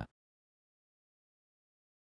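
Near silence: a pause in the narration.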